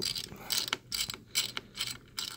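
Precision screwdriver turning a laptop CPU heatsink's retaining screw: a quick, uneven run of small metal clicks as the screw is worked loose.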